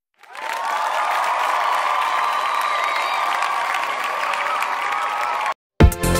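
Crowd applauding and cheering, added as a sound effect between music tracks. It swells up over about half a second, holds steady and cuts off suddenly about five and a half seconds in.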